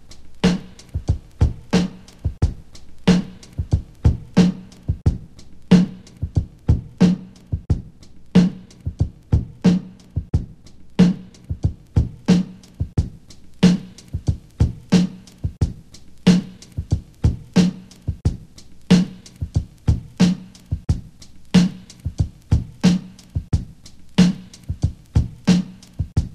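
A drum loop playing: a steady repeating beat of sharp drum hits. The loop runs through an EQ that is being adjusted, while an automatic gain plugin holds its level about constant.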